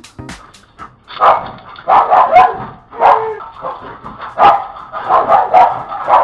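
A dog barking repeatedly in short, uneven barks, starting about a second in. It is heard through the light bulb security camera's small built-in microphone, which cuts off the high end and makes it sound thin.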